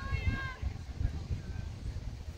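A distant, high-pitched female voice shouting a short call in the first half second, over steady low wind rumble on the microphone.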